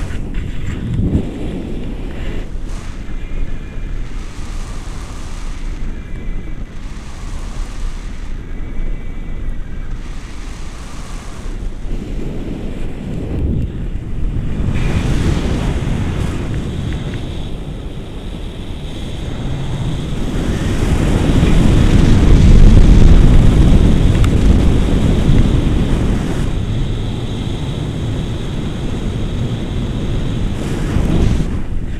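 Airflow buffeting the microphone of a pole-held camera in paraglider flight: a steady rushing wind noise that swells to its loudest about two-thirds of the way through, then eases off.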